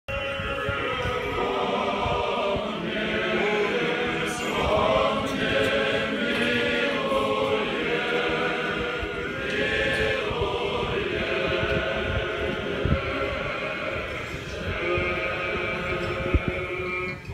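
An Orthodox choir singing an unaccompanied memorial-service (panikhida) chant, several voices holding long notes together.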